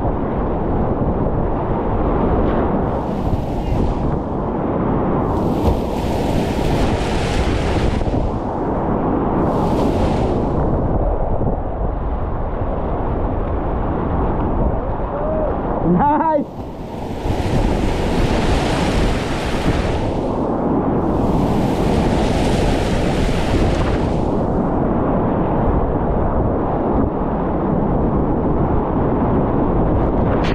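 Rushing whitewater rapids churning around a kayak, heard up close with wind buffeting the microphone and bursts of hissing spray; the level dips briefly about halfway through.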